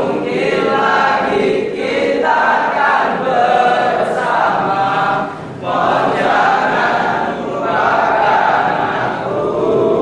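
A group of people singing together in short phrases, with brief breaks between them.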